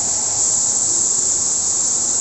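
A loud, steady, high-pitched drone of a rainforest insect chorus, unbroken throughout.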